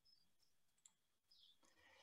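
Near silence, with one faint click a little under a second in.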